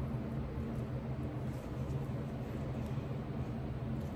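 A steady low mechanical hum with a few fixed low tones and a faint hiss, unchanging throughout.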